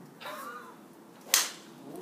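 A golf driver striking a ball off a tee: one sharp crack of the clubhead on the ball about a second and a half in, fading quickly.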